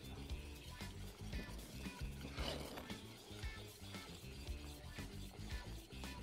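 Faint background music over the light rattle of a whisk stirring tomato soup in a metal saucepan.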